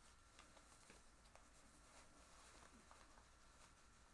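Near silence: room tone with a few faint ticks and rustles as a stick-on silicone bra cup is slowly peeled off under a satin top.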